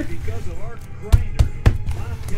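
Three dull thumps in quick succession about a second in, as a cardboard trading-card box is handled and knocked against the tabletop. A faint television voice runs underneath.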